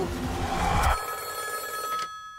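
A rising swell of noise over a low drone that cuts off suddenly about a second in, followed by a telephone ringing with a steady high tone.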